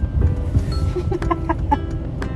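Low road rumble inside a moving car under background music, with a quick run of short pitched notes about a second in.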